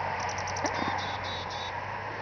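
A chickadee calling: a quick run of short, high notes lasting about a second and a half, over a low steady hum.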